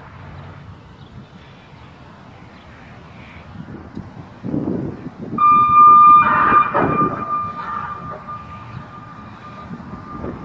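Outdoor warning siren sounding a steady high tone for a tornado warning, starting about five seconds in and holding on. A louder rushing noise peaks around the moment the tone begins.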